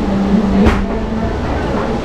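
Busy indoor shop din: a steady low machine hum under background chatter, with one sharp click about a third of the way in.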